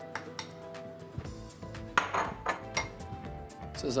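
Clinks and scrapes of a spatula and a ceramic bowl against a stainless steel mixing bowl, with one louder scrape about two seconds in, over light background music.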